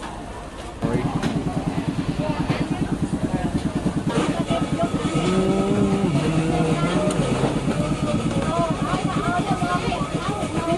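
A small engine starts up about a second in and keeps running with a fast, even putter, with voices talking over it.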